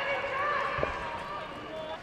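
Footballers' voices calling out across the pitch, with one dull thud a little under a second in.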